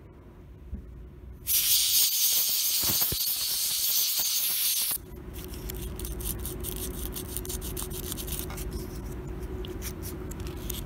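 An aerosol can sprays in one sharp hiss of about three and a half seconds that starts and stops abruptly. Then the brass contacts of a lathe toggle switch are scraped with a thin abrasive strip in fast, scratchy rubbing strokes, cleaning the contacts of a switch that kept cutting out.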